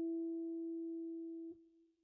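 A single held electric guitar note on a Gibson ES-137 semi-hollow archtop, the closing E of an A7 turnaround lick, fading slowly. It is damped about one and a half seconds in with a faint click, and a brief faint ring is left after it.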